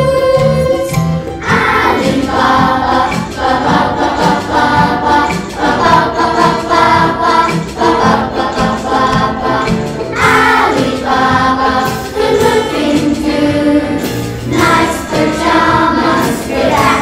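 A group of children singing together as a choir over an instrumental backing track with a steady beat.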